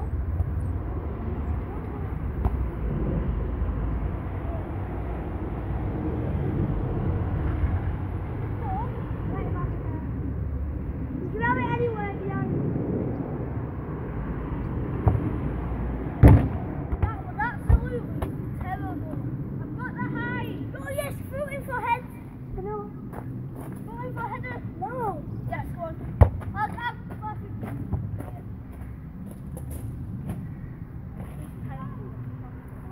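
Boys' voices calling out at a distance while playing football, with a few sharp thuds of the ball being struck about halfway through and again near the end, over a steady low rumble.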